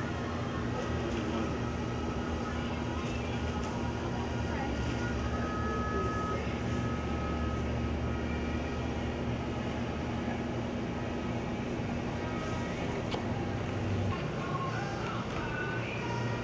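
Steady indoor room ambience: a constant low machine hum under a faint murmur of indistinct voices. The lowest hum tones stop about fourteen seconds in.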